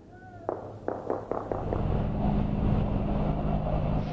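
Tandem-rotor military helicopter flying past: a steady low drone of engines and rotors that comes up about a second and a half in and holds. It is preceded by a few sharp clicks.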